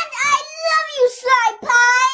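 A high, childlike character voice singing a drawn-out melodic line, with a short break for breath near the end.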